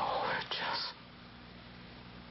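A man's breathy, strained whisper lasting under a second, from a man in distress as he recalls severe pain. A low steady hum follows.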